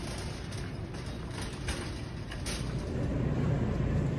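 Wheels of a wire shopping cart rolling over a concrete store floor: a steady low rumble that grows a little louder toward the end, with a few faint clicks.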